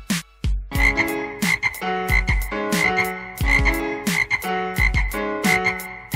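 Frog croaks repeating in a steady rhythm, one about every two-thirds of a second, each with a low thump under it like a beat.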